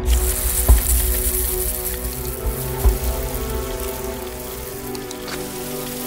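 Lawn sprinklers switched on by remote control, spraying with a steady hiss that starts suddenly, over sustained film-score music. Low thumps come at the start, just under a second in, and near three seconds.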